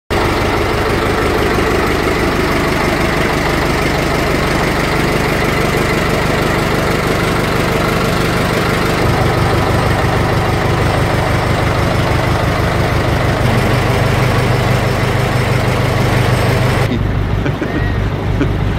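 A boat's inboard engine running in its engine room: a loud, steady drone whose low tone shifts slightly a couple of times. Near the end the sound turns duller and loses its high end.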